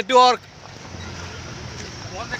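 A voice calls out loudly for a moment. It then gives way to the steady, low running noise of a safari jeep driving along a dirt forest track.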